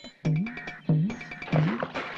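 Comic film background music: a low note that bends upward, repeated three times about two-thirds of a second apart, over light clicking percussion.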